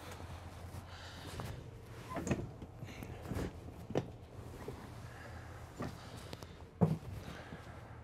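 A fold-and-tumble sleeper sofa being opened by hand, with scattered soft knocks and thumps from the seat frame and cushions as it is lifted and folded down. The loudest thump comes near the end, over a steady low hum.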